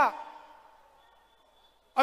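The last word of a man's speech over a public-address system, its echo dying away over about half a second, then a pause of near silence with only a faint steady hum until the speech resumes at the very end.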